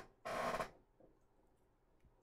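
A brief rustle of baseball cards in plastic penny sleeves being handled, lasting about half a second, then near silence.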